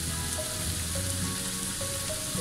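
Chopped long onion and garlic sizzling steadily in hot oil in a nonstick frying pan, with background music of held notes playing alongside.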